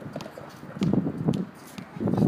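Basketball play on an outdoor court: scattered sharp taps and a cluster of low thuds about a second in, from sneakers and the ball on the court surface.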